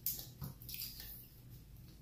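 Faint mealtime sounds of eating by hand: a few short, soft squishes in the first second.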